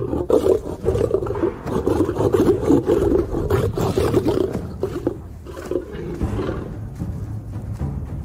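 Several young male lions growling together as they fight over a small kill, loud and rough for about the first five seconds, then dropping away. Orchestral music plays underneath.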